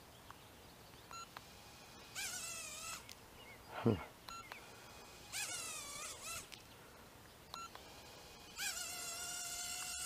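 Cheerson CX-10D nano quadcopter's tiny motors whining in three short spin-ups while the quad stays on the ground, as if its battery were dead although it is fully charged. A short thump about four seconds in.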